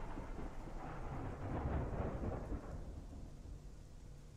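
Rolling thunder as a sound effect: a low rumble that swells briefly and then fades away toward the end.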